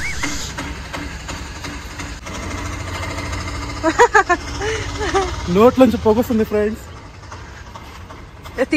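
A vehicle engine idling with a steady low rumble, which stops about five and a half seconds in; short bursts of voices are heard over it.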